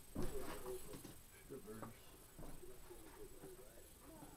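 Faint, indistinct speech, with a single knock just after the start.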